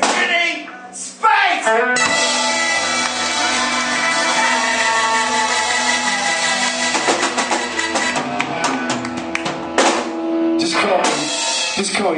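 A live band playing loudly, with guitar and drum kit. The music starts abruptly about a second in and stops about ten seconds in after a held note.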